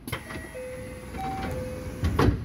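A train moving through the station: a rumble with a series of short, steady whining tones that step between a few pitches.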